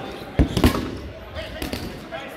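8.5-inch rubber dodgeball bouncing on a hardwood gym floor: two loud thuds about half a second in, then a couple of lighter bounces.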